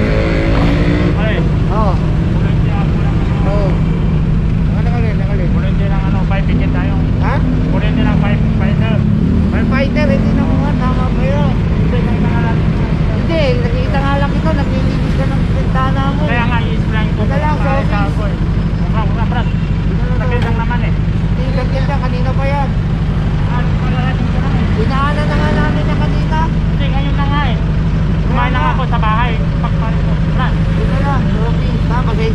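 Steady low hum of an idling vehicle engine under conversational speech.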